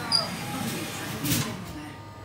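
People talking low and indistinctly, with a short high tone about a fifth of a second in and a brief hiss a little past halfway.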